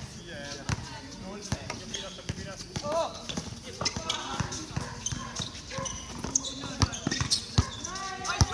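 A basketball bouncing on an outdoor hard court, a series of sharp, irregularly spaced thuds, with players' voices calling out between them.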